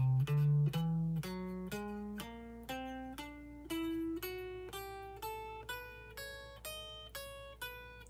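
Stratocaster-style electric guitar playing a finger-stretching exercise: single picked notes, about two a second, three to a string, climbing steadily in pitch across the strings.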